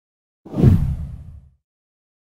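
A whoosh sound effect with a deep low end, coming in about half a second in and fading away over about a second.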